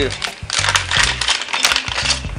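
Plastic packaging bag crinkling and rustling in the hands as a wooden camera-cage hand grip is pulled out of it, with soft background music underneath.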